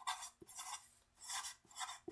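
Sharpie marker writing on paper: the felt tip rubbing across the page in several short, faint strokes as letters are formed.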